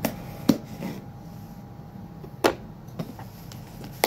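A cardboard shipping box being opened by hand: several short, sharp snaps and knocks from the flaps and box walls. The loudest comes about half a second in and another about two and a half seconds in.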